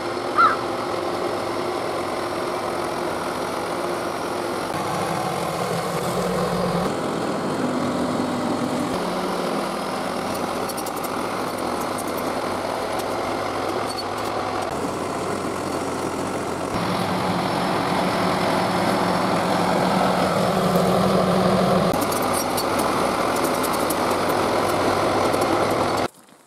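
1976 John Deere 450-C crawler bulldozer's engine running steadily under load as the dozer pushes dirt with its blade, its note rising and falling several times as the throttle and load change.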